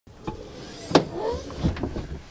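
A few sharp knocks and clicks, the loudest about a second in, over a low hum, as gear is handled in the open cargo area of an SUV.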